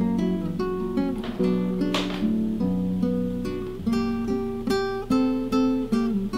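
Background music: acoustic guitar playing plucked notes and strummed chords.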